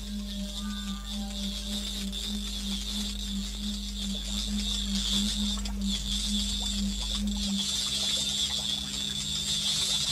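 Experimental electronic music from a Synton sound-effect box: a low tone throbbing about twice a second under a high, crackling hiss that swells. The low throb drops out about seven and a half seconds in, leaving the hiss.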